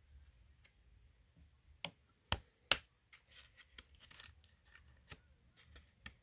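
A hard plastic trading-card case being handled: a few sharp plastic clicks, the loudest three coming close together about two to three seconds in and another near five seconds, with faint rubbing between.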